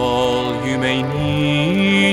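Hymn music from a string ensemble of violins and cello playing slow, sustained chords, with a man's singing voice. The low part steps up in pitch about one and a half seconds in.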